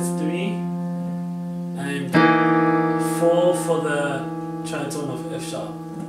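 Technics digital piano playing sustained left-hand chords. A chord carried over from before fades slowly, then a new chord is struck about two seconds in and held.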